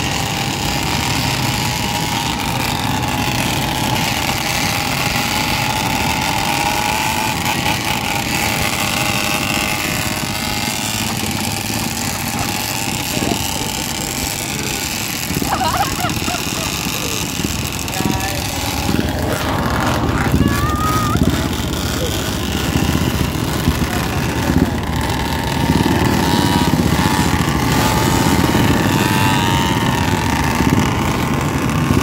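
Several small motorcycle and scooter engines running steadily at low speed in a slow procession, their pitch wavering a little. The engines grow somewhat louder in the last few seconds.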